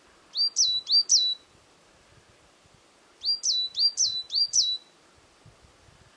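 A songbird singing two short phrases of repeated high, quick notes: three notes, then after a pause of about two seconds, four more. Each note rises and then drops sharply.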